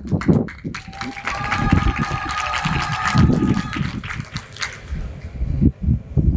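Audience applause, a dense patter of claps that swells about a second in and dies away near the end. A steady high tone sounds over it for about three seconds in the middle.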